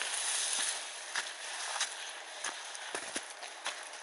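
Footsteps on a dirt path strewn with dry leaves, a little under two steps a second, over a steady rustle of dry grass.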